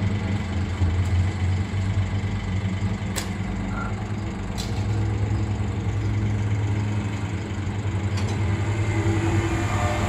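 A tram moving past along the street track, a steady low rumble with two sharp clicks a few seconds in. Near the end a steady motor whine comes in.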